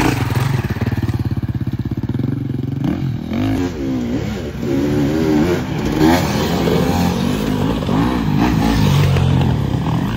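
Off-road enduro motorcycles running hard as they pass close by on a dirt trail. First one engine holds a steady, rapidly pulsing note. From about three seconds in, engine notes rise and fall over and over as the riders work the throttle.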